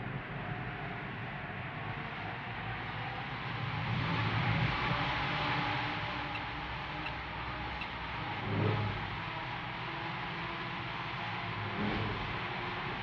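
Centrifuge trainer spinning up: a steady mechanical rumble and whir that grows louder about four seconds in, with a brief surge near nine seconds.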